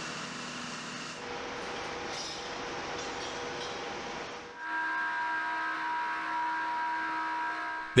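Steady machinery hum and noise in a ship's hangar bay. About four and a half seconds in, a louder held sound of several steady tones sets in and lasts.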